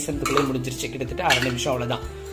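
A spoon scraping and clinking against a non-stick kadai as chana dal and whole spices are stirred while roasting, with a voice in the background.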